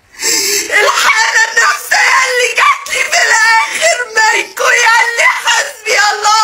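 A woman crying hard, sobbing and wailing in high, breaking cries.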